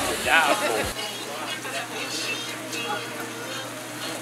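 A voice speaks briefly about half a second in, then there is a quieter background of faint, scattered talk over a steady hiss.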